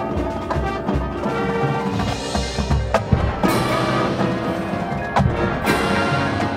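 High school marching band playing: brass over drums and front-ensemble mallet percussion. Several sharp accented hits cut through in the second half.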